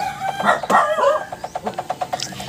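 A rooster crowing in the first second or so, a call with a bending pitch, over a fast, even clicking that continues throughout.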